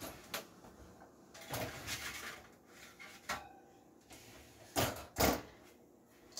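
Baking sheet being slid onto a metal oven rack and the oven door shut: light clicks and scrapes, then two louder thumps about five seconds in.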